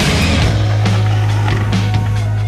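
Rock music: a held low bass note with irregular drum hits over it.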